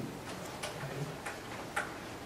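A few faint, irregularly spaced clicks and taps over quiet lecture-room noise, from a lecturer moving about at a whiteboard.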